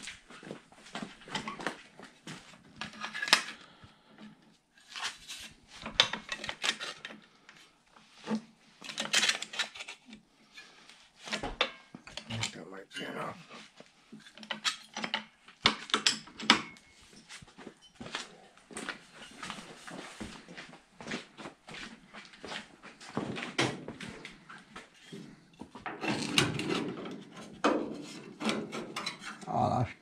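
Irregular clicks, clanks and taps of hand tools and sheet metal being handled at a workbench, in uneven bursts with short quiet gaps.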